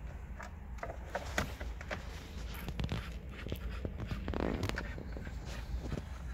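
Light clicks and scrapes of a screwdriver working a Torx screw loose from a plastic steering-column trim cover. A short rattling scrape comes about four and a half seconds in.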